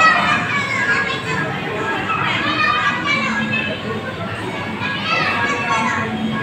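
Children's voices shouting and chattering in a busy indoor play area, with a few high shouts rising and falling along the way.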